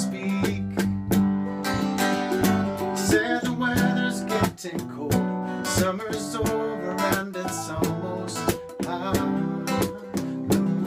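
An acoustic guitar and a second stringed instrument played together in a live duo, with steady rhythmic strumming and picked notes over ringing chords.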